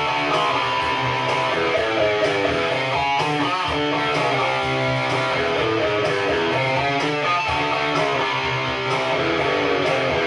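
Instrumental passage of a song led by an electric guitar, with notes changing continuously over a sustained low bass part.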